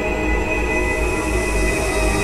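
Dense drone music: many steady held tones layered over a rumbling low end and hiss, with no beat and an even level throughout.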